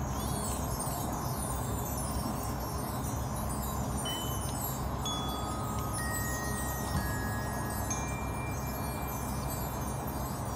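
Marching band front ensemble playing a soft passage: chimes shimmering in repeated falling cascades, with single bell-like held notes from mallet percussion entering one after another from about four seconds in.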